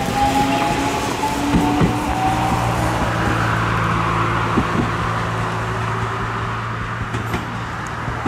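JR West 223 series electric train pulling away, its motor whine rising slowly in pitch as it gathers speed, then easing as it draws off, with a few clicks from the wheels on the track.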